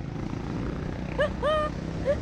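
Go-kart engine running steadily as the kart drives, a low rough drone. A brief raised voice calls out a little after a second in.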